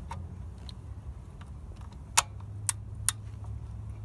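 A steel spanner clicking against a socket tool as it is worked onto a nut: three sharp metal clicks a second or two in, over a steady low hum.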